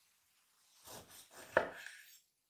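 Kitchen knife slicing a cherry tomato in half on a wooden cutting board. A soft cutting sound starts about a second in, and a sharp knock of the blade on the board comes about one and a half seconds in, the loudest moment.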